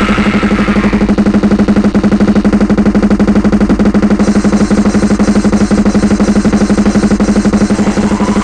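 Lo-fi raw black metal: heavily distorted guitar held on one low note over very fast, even drumming. A higher, harsher layer drops out about a second in, leaving the guitar and drums.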